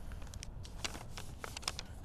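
Paper being folded and creased by hand into paper airplanes: several short, crisp crackles and taps of paper scattered through the moment.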